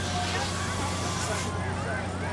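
Crowd chatter, several voices talking at once, over a steady low mechanical hum.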